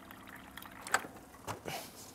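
Water dispenser and cup being handled: a faint trickle at first, then a few light clicks about a second in and again shortly after.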